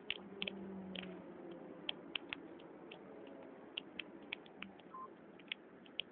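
Bus interior: a faint steady hum with irregular light clicks and rattles.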